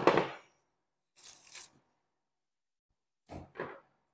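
Knife and raw beef worked on a plastic cutting board while trimming a flank: a sharp knock at the start, a brief high scraping hiss about a second in, and two short soft thuds near the end.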